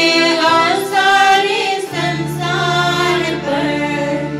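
Music: devotional singing by a group of voices, with a steady low accompanying note that comes in about halfway through.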